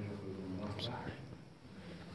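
Quiet speech, a voice talking softly.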